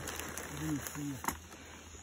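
A man's voice, faint and brief: two short syllables about half a second in, over a low outdoor background, with a single click a little after a second.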